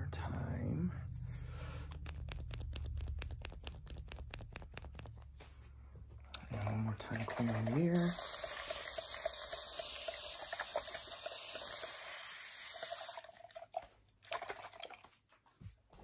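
Plastic spray bottle giving a steady hiss of mist for about five seconds, starting about halfway in. Before it comes a rapid run of light clicks over a low hum.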